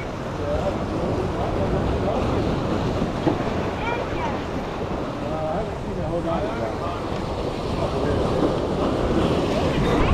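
Wind buffeting the microphone over surf washing against jetty rocks, with faint voices in the background.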